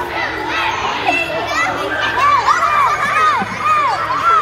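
A crowd of young children shouting and calling out all at once. From about two seconds in, one high voice repeats a short call over and over, about two to three times a second.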